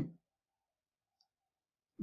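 The end of a spoken 'um' fading out, then near silence: a pause in speech.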